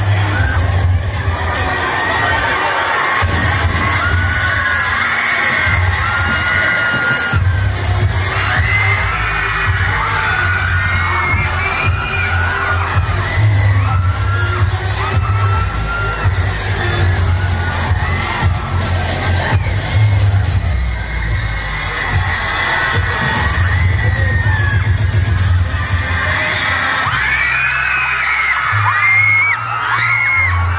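A crowd of students screaming and cheering in many overlapping high-pitched shrieks over loud dance music with a heavy bass beat.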